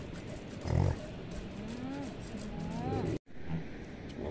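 Yaks in the herd grunting and calling: a low call about a second in, then short rising calls toward the middle. Under them, a regular swish of milk squirting into a metal pail as a yak is hand-milked, until the sound briefly drops out about three seconds in.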